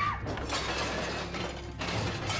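Crashing and clattering of china plates and household objects being knocked over and breaking, over a low droning film score.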